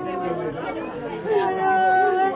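A woman crying aloud in long, drawn-out wailing tones, with other voices talking and sobbing around her.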